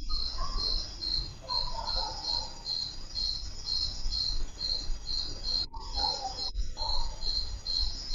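A cricket chirping steadily at about two chirps a second, picked up over a video-call microphone.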